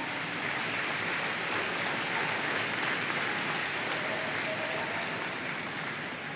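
A large crowd applauding steadily, easing off slightly near the end.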